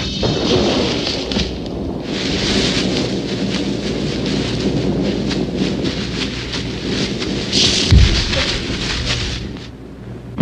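Two men scuffling at close quarters: rustling clothes and trampling feet over a hissy, rumbling old film soundtrack, with one heavy thud about eight seconds in.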